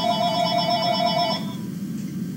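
Handheld phone ringing: a steady electronic ring tone that stops about one and a half seconds in, as the call is answered.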